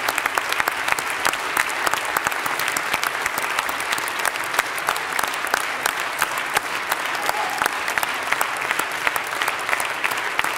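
Theatre audience applauding steadily, a dense continuous clapping from a large crowd.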